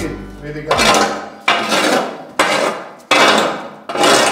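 Metal shovel clanking on the concrete floor of a cattle stall, a sharp clank about once a second, each ringing away.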